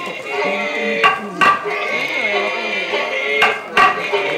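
Live kabuki stage music: a chanter's drawn-out, wavering sung narration over held accompanying tones, cut by four sharp clacks, two about a second in and two near the end.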